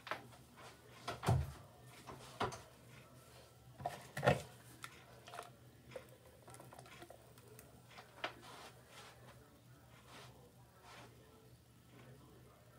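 Scattered knocks and clicks of a hairbrush and hand mirror being picked up and handled, four sharper knocks among fainter clicks, over a faint steady low hum.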